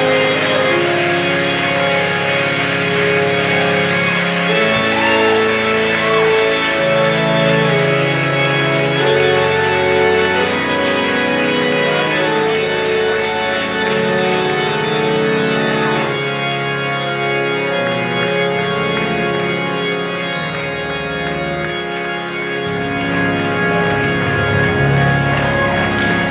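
Organ playing slow, sustained chords, the harmony changing every second or two.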